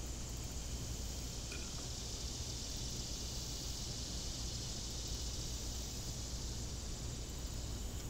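A steady, high-pitched insect chorus from the summer trees, swelling a little in the middle, over a low steady rumble.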